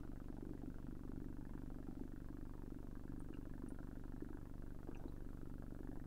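Faint room tone: a steady low hum with no changes.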